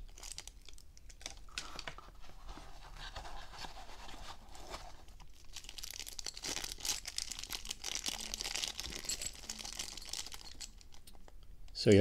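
Clear plastic zip-lock bags being handled and worked open by fingers: a continuous crinkling and rustling of thin plastic, busier in the second half.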